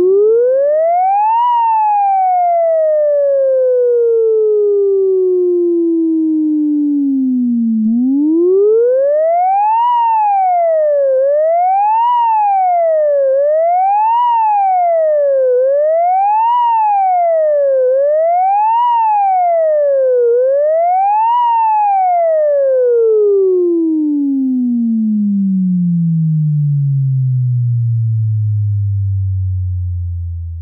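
Minimoog synthesizer holding one sustained note whose pitch glides like a siren. It sweeps up, falls slowly, then swings up and down about every two seconds six times, and near the end sinks to a low hum.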